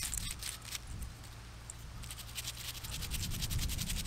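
Small brush scrubbing soil off a small dug-up metal ornament held in the fingers: a few scratchy strokes at first, then quick, steady back-and-forth scratching in the last second or so.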